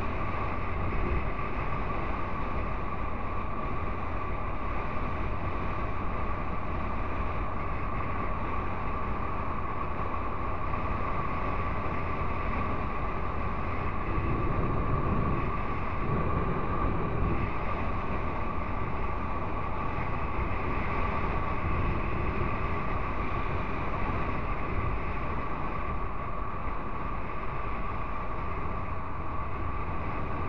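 Honda NC750X parallel-twin motorcycle cruising in traffic, heard from a camera on the bike: steady engine and road noise with a low rumble of wind on the microphone and a steady high whine. About halfway through it swells briefly as a car comes close alongside.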